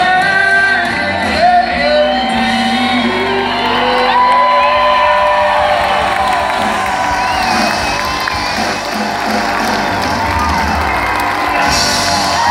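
A live country band playing with singing, heard from within the audience, with whoops and shouts from the crowd. Crowd cheering grows through the second half as the song draws to its close.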